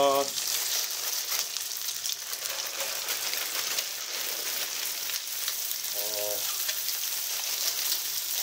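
Oil sizzling and crackling steadily in a frying pan as a bag of pre-cut vegetables (bean sprouts, cabbage, carrot) is tipped onto browning chicken tail pieces and stirred with a slotted turner.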